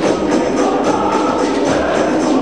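Male glee club singing in full chorus over a quick, steady beat of hand drums.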